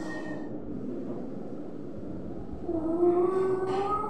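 A man singing unaccompanied: a short quiet pause, then about two and a half seconds in a long held sung note with a slight glide in pitch.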